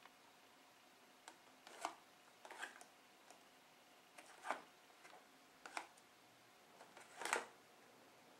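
Faint rustles of a cardboard box of chicken coating mix being handled and turned over, about five short bursts a second or two apart, the last about seven seconds in the loudest.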